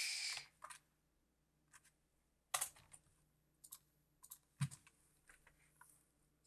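Computer keyboard typing and mouse clicks while a search is entered: faint, scattered single clicks, a few each second, with two louder ones about halfway through and two-thirds of the way in.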